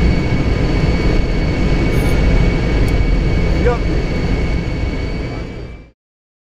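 Flight-deck noise of an Ilyushin Il-76 on a low pass: the steady low noise of its four turbofan engines and the airflow, with a constant high whine over it. It fades out just before the end.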